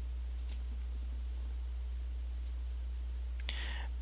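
Computer mouse clicks: two quick clicks about half a second in and another around two and a half seconds, over a steady low hum.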